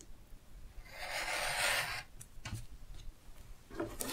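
Rotary cutter blade rolling through a fabric strip on a cutting mat, one stroke lasting about a second with a rough hiss. A few light clicks follow as the ruler and cutter are handled.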